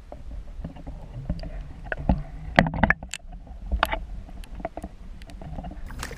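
Splashing and knocking as a chain pickerel is scooped into a landing net beside a kayak: scattered short clicks and splashes, with a quick cluster of the loudest ones just before the middle and another about a second later.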